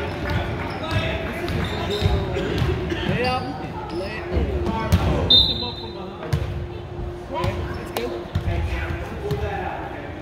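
Basketball being dribbled and bouncing on a hardwood gym floor, with spectators' voices echoing in the hall and a brief high tone about five seconds in.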